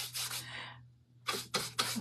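Paintbrush dry-brushing paint onto the printed panel of an antique washboard: scratchy bristle strokes rubbing across the surface. They go quiet for a moment about a second in, then come back as a few short, quick strokes.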